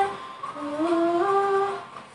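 A woman humming a tune: after a brief pause, a phrase of held notes stepping upward, stopping just before the end.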